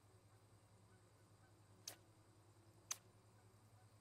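Near silence with a steady low hum and two sharp clicks about a second apart, the second louder.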